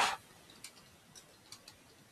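Computer keyboard being typed on: a few faint, irregular key clicks, about four in two seconds.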